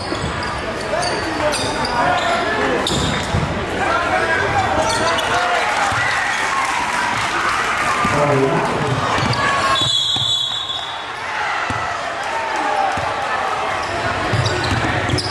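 Live game sound in a gym: a basketball being dribbled on the hardwood court under the steady chatter and shouts of the crowd and players. About ten seconds in the crowd noise dips briefly under a short high tone.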